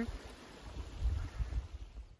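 Trickling snowmelt water running in small streams along a muddy trail, a steady rush of noise, with a low rumble about a second in.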